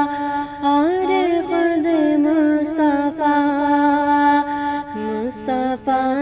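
A solo voice sings a naat melody in long held notes, with gliding ornamental turns about a second in and a falling phrase near the end.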